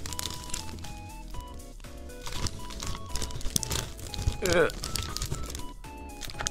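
Paper and an envelope crinkling and rustling as a paper item is slid back into the envelope, over soft background music. A short vocal sound comes about four and a half seconds in.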